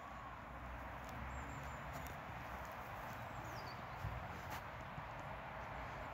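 Quiet open-air background with a steady low rumble and a few faint soft knocks near the end.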